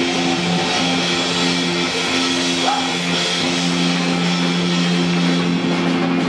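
Live rock band: a heavily distorted electric guitar holds a loud, sustained droning chord that rings on for seconds at a time, over a dense wash of noise, with no clear drum beat.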